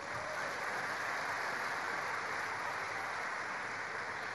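A large audience applauding, a dense, even patter of many hands clapping that holds steady.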